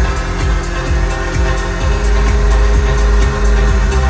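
Electronic dance music played loud over an arena PA during a live DJ set, with heavy sustained bass and a steady high ticking beat.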